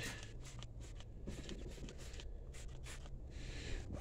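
A few faint, short hissing squirts from a plastic trigger spray bottle of Turtle Wax Luxe Leather cleaner and conditioner, sprayed onto a vinyl truck dashboard.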